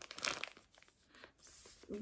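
Plastic wrapping on a multipack of baby bodysuits crinkling as it is handled: a rustle at the start, then a shorter, higher rustle near the end.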